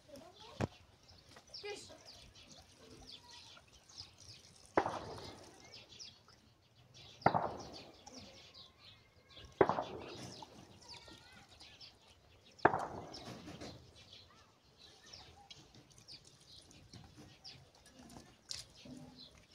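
Four sharp splashes of water on a wet concrete slab, each fading over about a second, as a small child slaps at the flow from a running garden hose. Birds chirp in the background throughout.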